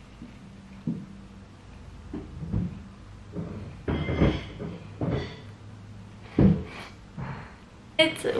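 A few short, soft knocks and rustles of gloved hands working a small nose stud into a fresh nostril piercing, over a faint steady low hum.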